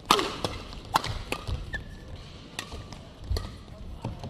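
Badminton rackets striking a shuttlecock during a doubles rally: sharp, short hits, several coming less than a second apart.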